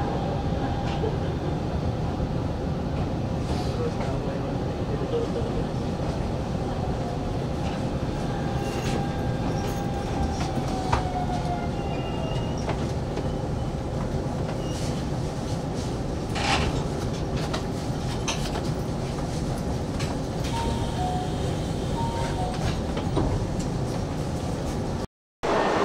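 Hanshin 5500 series electric train running slowly, heard from inside the train: a steady rumble with scattered clicks and knocks from the wheels on the track, and faint squealing tones in places.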